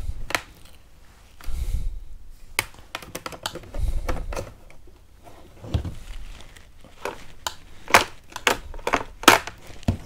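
Plastic clicks and knocks of a visor being handled and snapped onto an AGV K1 motorcycle helmet's side mounts. Dull handling bumps come in the first few seconds, then a run of sharp clicks in the second half.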